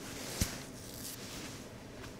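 A single sharp click about half a second in, then faint rustling, over quiet room tone.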